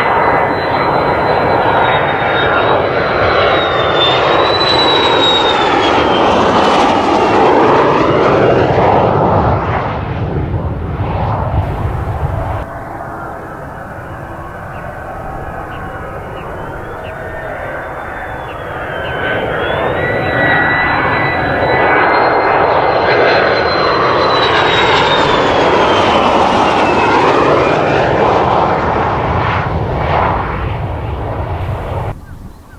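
Mitsubishi F-2B fighter's single turbofan engine on landing approach: a loud jet roar with a high whine that slides down in pitch as the aircraft passes. It drops off suddenly about twelve seconds in, and a second pass builds up from about twenty seconds on.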